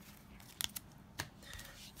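Faint handling of plastic-sleeved trading cards as they are gathered up off a cloth playmat, with a few short scrapes and clicks of the sleeves sliding against each other.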